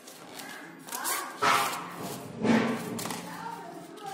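Raised human voices, shouting or calling without clear words, loudest about one and a half and two and a half seconds in.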